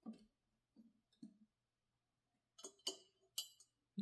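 Near silence broken by a few faint clicks and light knocks, with a small cluster about three seconds in.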